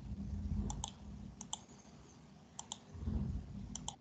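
Computer mouse clicks in close pairs, four pairs spread evenly. A low muffled rumble sits under them near the start and again near the end.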